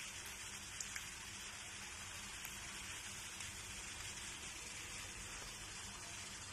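Faint, steady crackling hiss of the frying pan of creamy pasta sizzling on the stove, with a few soft ticks about a second in.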